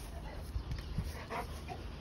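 A muzzled Cane Corso making a few faint, short sounds.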